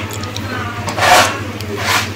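Two short scrapes, a louder one about a second in and a weaker one near the end, as a plastic pan is dragged over the cowshed floor to scoop up cow dung, over a steady low hum.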